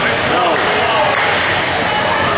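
Basketball game sounds in a large gym: voices of players and onlookers calling out over a basketball bouncing on the hardwood court.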